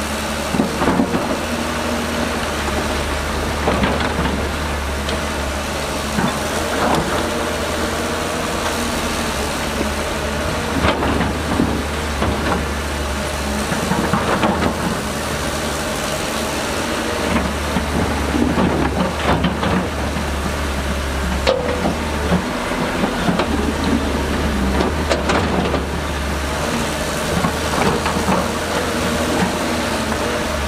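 Heavy diesel engine of a Zoomlion excavator running under load, its low note shifting a few times, with scattered crunching and scraping of stone and dirt as the machine works.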